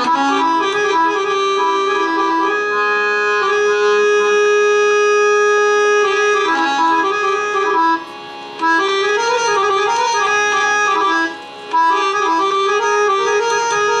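Harmonium playing a melodic line of held reed notes, the lehra (repeating melody) that accompanies a tabla solo. The sound briefly drops out twice, about eight and eleven seconds in.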